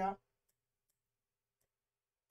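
One spoken word, then near silence broken by a few very faint clicks: taps on the interactive whiteboard's touchscreen.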